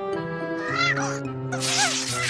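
Two short high animal-like calls from a cartoon creature, each gliding up and then down, over steady background music.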